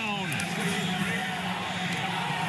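Stadium ambience on a football broadcast: a steady wash of crowd-like noise with a held low note running under it, after the falling tail of a spoken word at the start.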